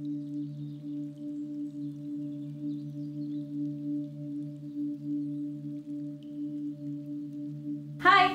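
Intro jingle of an animated logo: a steady low drone held on two tones without a break, with faint twinkling, shimmering sounds above it. A woman's voice starts right at the end.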